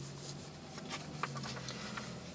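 Faint steady low hum with a few small clicks about a second in.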